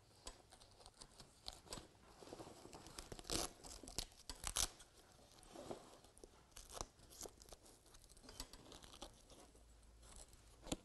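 Hook-and-loop straps of a fabric storage cupboard being wrapped around a table's metal frame and fastened: faint fabric rustling broken by short sharp rips, the clearest a little over three seconds in and about four and a half seconds in.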